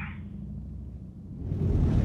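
Low steady rumble of a car's cabin noise, swelling louder and fuller about one and a half seconds in.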